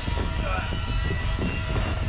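Steady, dense low rumble with a rapid flutter from a horror film's sound design.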